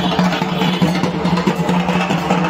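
Bengali dhak drums beaten with sticks in a fast, dense, steady rhythm, over a sustained low tone.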